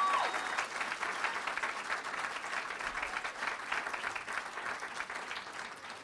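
Audience applauding steadily, thinning out toward the end.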